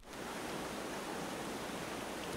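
Steady rushing of a flowing river, an even hiss with no distinct events, beginning suddenly at the start.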